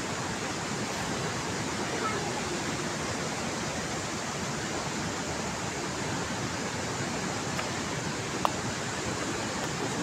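Steady, even rushing noise, with one sharp click about eight and a half seconds in.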